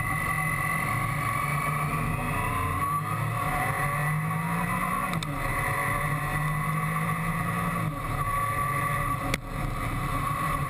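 Triumph Tiger 955i three-cylinder motorcycle engine under way, heard from onboard. The engine note rises about halfway through as the bike accelerates, holds steady, then dips briefly. A short click comes near the end.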